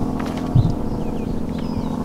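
Outdoor ambience: a steady low hum and a low rumble, with a few faint bird chirps.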